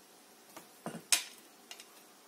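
A few light knocks and clinks of small containers of craft stones being picked up and set down on the work surface. The sharpest comes just after a second in.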